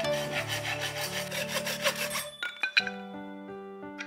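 A small framed hand saw cutting a thin wooden strip, a rapid rasping of back-and-forth strokes that stops about halfway through, followed by a few sharp knocks.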